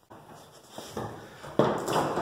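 Metal clicks and rattling as the latch and lock of a corrugated steel roll-up storage unit door are handled, with a louder clatter of the door starting about a second and a half in.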